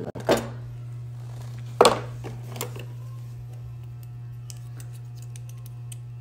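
A packaged set of clay sculpting tools being handled and opened: one sharp clack about two seconds in, then a few faint clicks, over a steady low hum.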